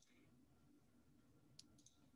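Near silence, with a few faint computer-mouse clicks near the end.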